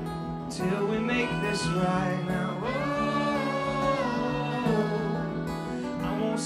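A rock band and choir performing a song live, with long held sung notes over guitar and a steady band backing.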